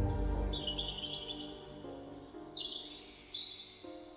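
Slow ambient background music of held chords that change a few times, with a bird's high chirping trill heard twice: about half a second in and again past the middle.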